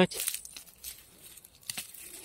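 Dry onion tops and papery bulb skins rustling and crackling as a hand grips a nest of onions in the soil, with a short rustle at the start and a few faint clicks after.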